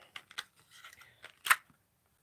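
Small clicks and crackles of a rhinestone-studded lip gloss tube and its packaging being worked open by hand, with one sharp click about a second and a half in.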